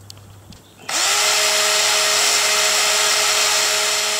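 Makita 12V max cordless drill spinning up about a second in with a rising whine, then running steadily at full speed, powered by its rebuilt BL1016 battery pack with new 18650 cells.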